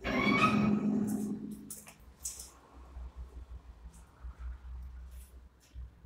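A cat's long meow at the very start, fading away over about a second and a half, followed by a few short faint clicks and low handling rumble.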